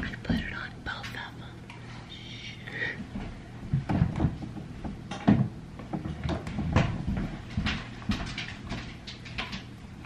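A woman whispering briefly, then a run of short knocks and clatters as things are handled and set down on a kitchen counter.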